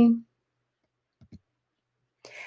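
A woman's spoken word trails off, then near silence broken by two faint clicks in quick succession about a second and a quarter in.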